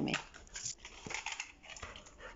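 Faint, irregular sounds of a pet dog close by, with a few light clicks.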